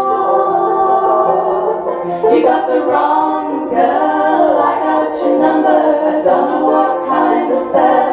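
Three women singing a country-folk song in close harmony, with acoustic guitar and banjo accompaniment.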